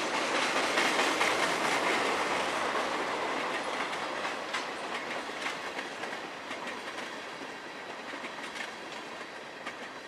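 Freight train cars rolling past close by, steel wheels clicking over the rail joints, fading steadily as the tail end of the train goes by.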